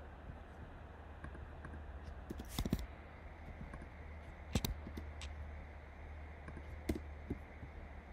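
A few computer mouse clicks: a quick group of two or three about two and a half seconds in, then single clicks later. Under them runs a faint steady low hum.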